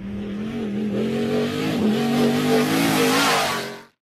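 Engine revving sound effect, its pitch wobbling and climbing a little, cut off suddenly near the end.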